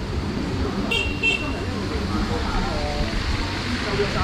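A vehicle horn gives two short high beeps about a second in, over steady street noise and scattered voices.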